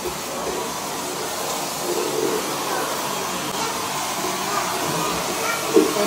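Vacuum cleaner running steadily.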